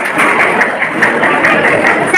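Audience applauding with steady clapping.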